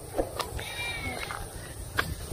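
A goat bleating once, faint and high-pitched, lasting under a second, with wind rumbling on the microphone.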